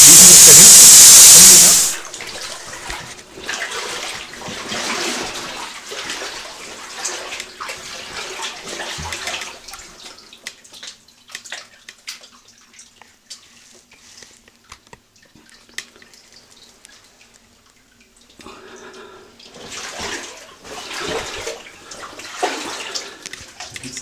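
A loud, steady hiss that cuts off abruptly about two seconds in. It is followed by quieter, irregular splashing and sloshing of water with scattered knocks, as people move through water in a mine tunnel.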